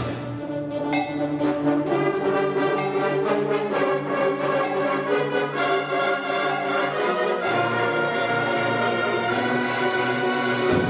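Concert band playing a full-ensemble passage: brass and woodwinds holding chords over drum and cymbal strokes, with the bass line shifting about seven and a half seconds in.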